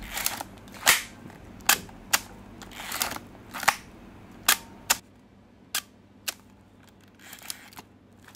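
Plaubel Makina 67's leaf shutter being fired again and again, with the camera handled between shots: a string of sharp clicks about half a second to a second apart, fainter after about five seconds.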